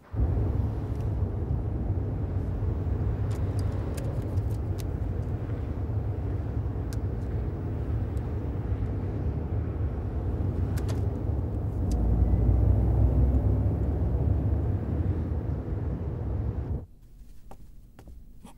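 Car engine and road noise heard from inside the cabin while driving: a steady low rumble that grows louder about twelve seconds in, then cuts off suddenly near the end.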